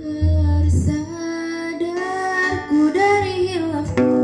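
A group of teenage girls singing an Islamic religious song into microphones, with acoustic guitar accompaniment.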